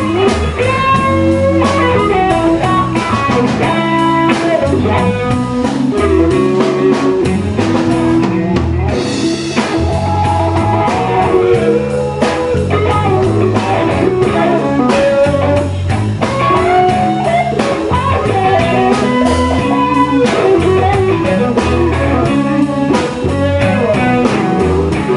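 Live blues band playing an instrumental passage with no vocals: electric guitars over electric bass and drum kit, loud and steady throughout.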